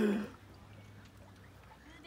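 A voice trails off, followed by quiet open-air background with a faint steady low hum. Another voice starts up right at the end.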